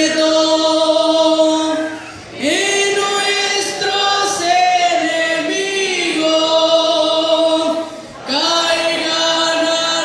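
Congregation singing a hymn together in Spanish, in long held notes, with two short breaks between phrases about two and eight seconds in.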